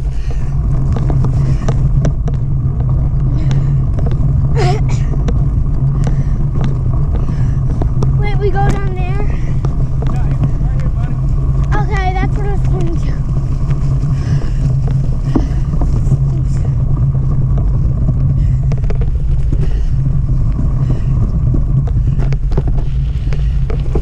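Wind buffeting the microphone of a camera riding along on a mountain bike, a steady low rumble mixed with tyre noise over grass and leaves. A voice calls out a few times in the middle.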